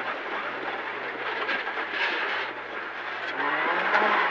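Renault Clio N3 rally car's four-cylinder engine heard from inside the cabin, its revs wavering and dipping, then climbing near the end, over a steady hiss of tyres on a snowy road.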